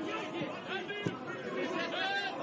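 Indistinct voices from a football pitch: shouted calls over low chatter.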